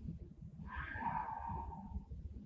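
A person's soft, sigh-like exhale, starting about half a second in and fading near the end, over a low rumble of room noise.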